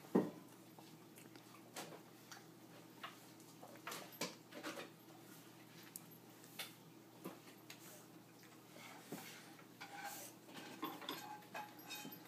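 Faint, scattered taps and clicks of a toddler's hands and food on a wooden high-chair tray, with one louder knock just after the start.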